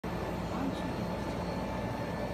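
A steady low background rumble with faint, indistinct voices.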